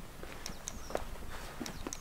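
Faint footsteps on a carpet runner laid over a hard floor: a few soft, irregularly spaced taps and ticks.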